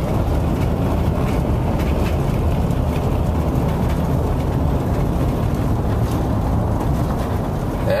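Steady road and engine noise heard inside a moving car's cabin, a low rumble that holds even throughout.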